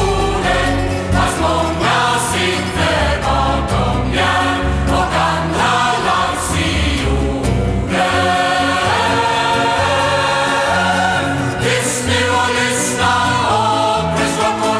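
A choir singing with a band of bouzouki, guitar, bass and piano in a live performance. The deep bass thins out about eight seconds in.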